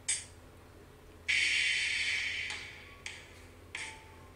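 Breathing close to a microphone: a short breath at the start, a longer, louder exhale a little over a second in that fades over about a second, then two short breaths near the end, over a faint steady hum.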